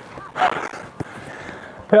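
A short call from a player, then a single sharp knock about a second in, a football being kicked on the artificial pitch, with a voice starting at the very end.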